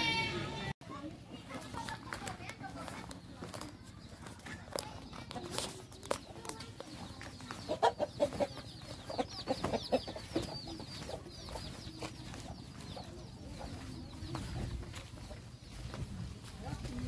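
Domestic chickens clucking in a quick run of short calls about halfway through, over thin high chirping.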